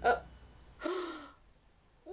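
A woman gasping: a quick breath at the start, then a short falling sigh just under a second in.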